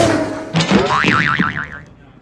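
Cartoon-style 'boing' sound effect: a whoosh, then a tone that slides upward and wobbles up and down for about a second before fading.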